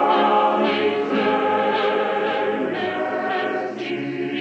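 A group of voices singing a hymn together in held notes, typical of a church congregation or choir.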